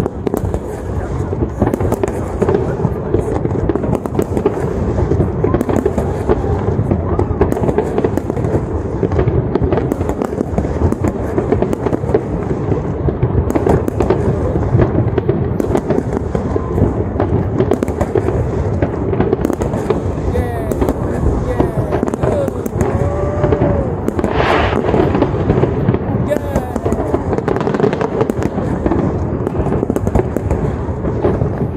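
Large fireworks display: shell bursts bang and crackle in rapid, overlapping succession with no let-up.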